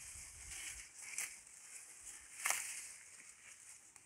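A cow grazing Mombaça grass close up: two sharp tearing snaps as mouthfuls are bitten off, about a second in and again near the middle, over a rustling of the grass blades.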